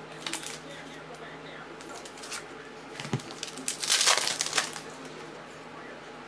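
Foil trading-card pack wrapper crinkling as it is handled and opened, loudest about four seconds in, after a few light clicks of cards being handled.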